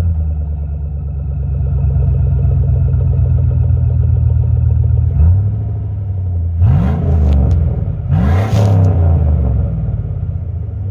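Chevy Silverado 5.3-litre V8 idling, just after starting, through a Thrush Rattler muffler on a single exhaust that ends under the truck, with the catalytic converters still in place. A light blip about five seconds in, then two short revs that rise and fall back to idle.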